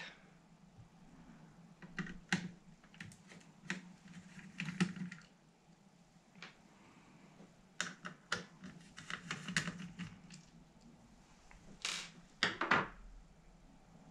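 Screwdriver undoing the small screws that hold a Sinclair QL's microdrive units: scattered light clicks and ticks in small clusters as the tip seats and the screws turn out.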